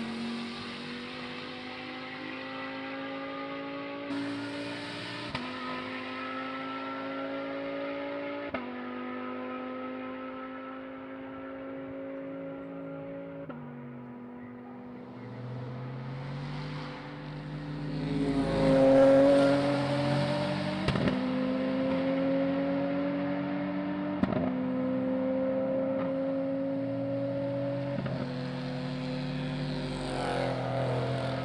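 Racing car engines accelerating hard down a straight. Each engine's pitch climbs steadily and drops sharply at every upshift, several times over. A second car joins partway through and comes past loudest about two-thirds of the way in.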